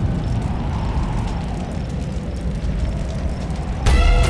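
A low, steady rumble, a dramatic sound effect in the soundtrack. Music comes in abruptly near the end.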